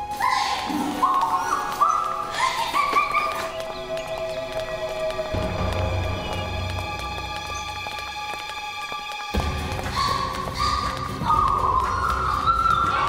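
Background music: a climbing run of notes over held tones, with a deep low drone coming in about five seconds in.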